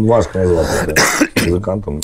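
Men talking, with throat clearing and a short cough between words.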